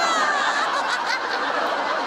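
Studio audience laughing together: a steady wash of crowd laughter that holds at the same level throughout.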